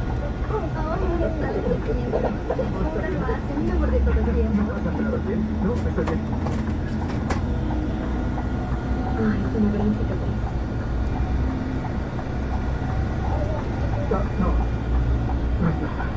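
Steady low drone of a coach's engine heard from inside the cabin while the bus moves slowly, with faint voices in the background.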